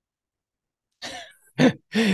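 After about a second of silence, a man makes a short raspy exhale like a throat clear, then two short voiced bursts as he starts to laugh.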